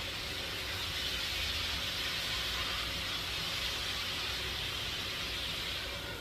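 Large pieces of meat sizzling in a frying pan, a steady even hiss while they are turned with tongs.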